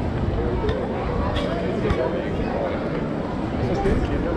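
Indistinct voices of passers-by talking on a busy pedestrian street, over a steady low rumble of outdoor crowd noise, with a few faint clicks.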